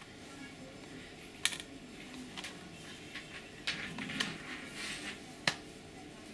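Small clicks and scraping as the two halves of an external slot-load DVD drive enclosure are handled and lined up to fit together, with two sharper clicks, about a second and a half in and near the end.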